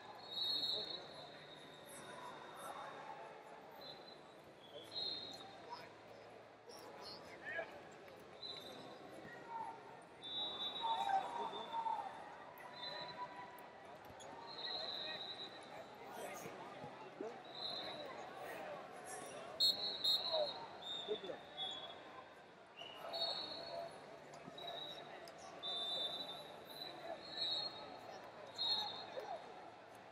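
Ambient sound of a busy wrestling arena: scattered shouting from coaches and spectators, with short, high whistle blasts recurring every second or two from referees on the surrounding mats, and occasional thuds.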